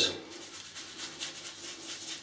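Fingers rubbing wet shaving lather over a stubbled face: soft, quick, repeated rubbing strokes.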